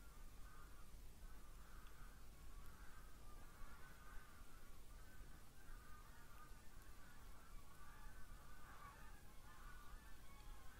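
A flock of geese honking as it flies past, faint, with many short calls overlapping and following one another throughout.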